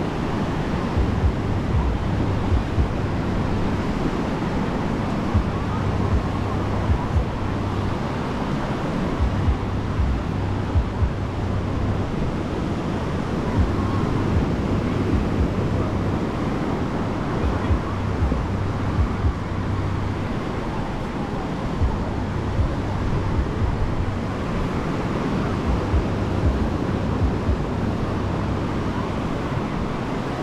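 Surf breaking and washing up a sandy beach, with gusty wind buffeting the microphone in frequent low thumps and the indistinct chatter of people around.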